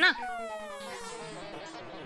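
A comedy sound-effect sting: one long, buzzy electronic tone that slides slowly downward in pitch for about a second and a half.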